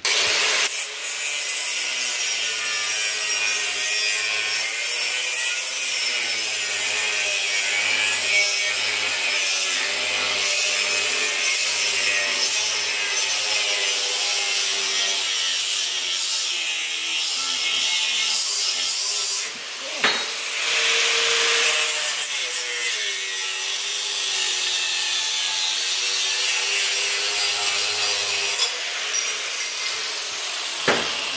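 Angle grinder with a cut-off wheel cutting through a steel tube, running steadily under load with its pitch wavering as the wheel bites. There is a brief break in the cut about twenty seconds in, and the sound eases off near the end.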